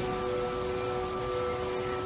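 Soft background music of sustained held tones over a faint hiss.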